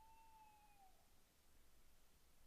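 Near silence, broken at the start by one faint tone about a second long that drifts slightly down in pitch.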